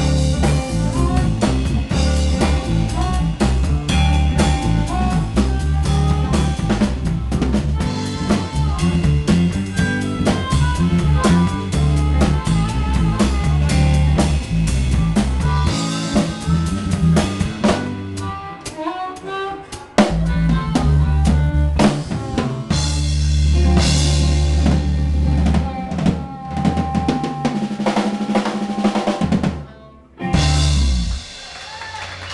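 Live blues-rock band with harmonica, electric guitar and drum kit playing loud. The low end drops out for a few seconds past the middle before a hard hit brings the full band back, and the song stops just before the end.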